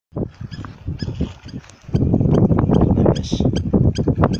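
Dense crackling rattle of a mass of scorpions being tipped from a sack into a plastic barrel, getting loud about halfway through. Short high chirps repeat above it several times a second.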